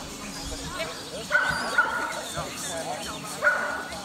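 A dog barks twice, the first about a second in and the second near the end. Each bark starts sharply and is drawn out into a held, high note.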